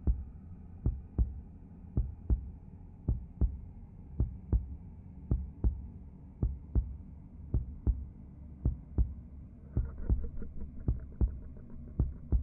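Heartbeat sound effect: a double low thump about once a second, steady throughout, over a low hum. From about ten seconds in, a faint quick flutter joins it.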